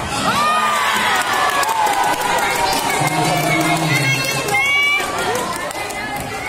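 Children shouting and cheering together, many overlapping voices with drawn-out calls that rise and fall in pitch.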